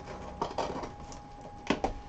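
Cardboard shipping box being cut and popped open by hand: a few short crackles and knocks about half a second in, and louder ones near the end.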